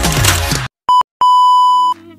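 Electronic dance music cuts off suddenly, then an electronic beep of one pure, steady pitch sounds twice: a short beep, then a longer one held for under a second.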